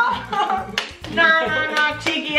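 Background music with a steady beat, under people laughing.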